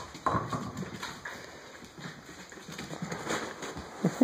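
A corgi's claws clicking and scrabbling on a hardwood floor as it runs, in quick irregular taps, with a couple of sharper knocks near the start.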